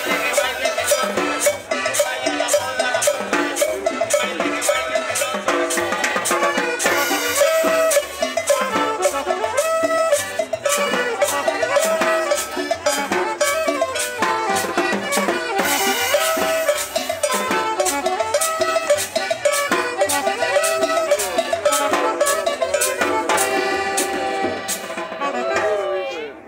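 Live street band playing upbeat Latin dance music, with accordion, upright bass and hand drums keeping a steady fast beat; the music winds down at the end.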